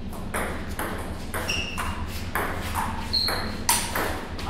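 Table tennis rally: the celluloid ball clicking off paddles and bouncing on the table, about two to three sharp hits a second, some with a brief high ring, the loudest near the end.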